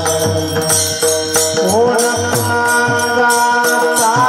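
Devotional kirtan music: small brass hand cymbals (taal) struck in a steady beat, about three to four strikes a second, over a drum and group chanting. Sung notes slide upward about a second and a half in.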